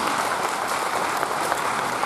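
Audience applauding, steady clapping from many hands.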